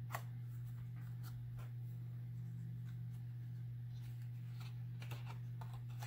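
Light handling sounds of a large spiral-bound cardstock coloring book: a sharp tap just after the start, then a few faint rustles and ticks as hands touch and leave the page, over a steady low hum.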